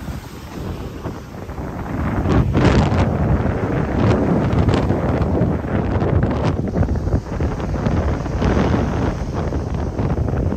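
Strong sea wind buffeting the microphone in gusts, over the wash of surf breaking on the beach.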